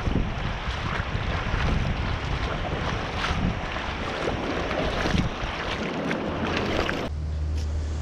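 Wind buffeting the microphone over shallow surf washing across wet sand, a steady rushing noise. About seven seconds in it cuts off suddenly to a quieter, steady low rumble.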